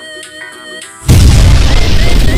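Light plucked background music, then about a second in an abrupt, very loud boom sound effect for a toy gun firing cuts in and swamps the music.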